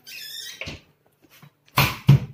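Refrigerator door being handled: a short high squeak at the start, a light knock, then a loud thump near the end as the door is shut.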